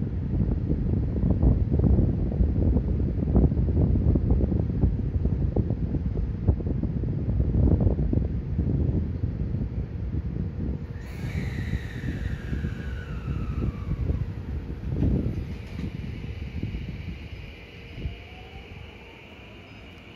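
Electric train (JR West 223 series) running at low speed: a low rumble of wheels on rail with irregular clanks, fading over the stretch. About eleven seconds in, a motor whine glides down in pitch for a few seconds, then steady higher electrical tones and a faint rising whine near the end.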